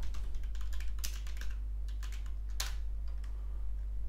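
Typing on a computer keyboard to enter a short command. A quick run of keystrokes comes in the first second and a half, then a single louder keystroke about two and a half seconds in as the command is entered. A steady low hum sits underneath.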